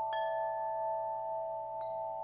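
Closing station-ident music: two soft chime strikes, one just at the start and a fainter one near the end, ringing over a steady held chord.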